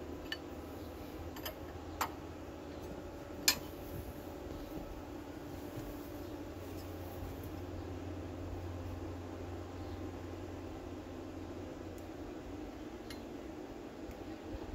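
A few short, sharp metallic clinks and taps of a tool and the new brass temperature sensor against the engine's fittings as it is threaded in, the loudest about three and a half seconds in, over a steady low hum.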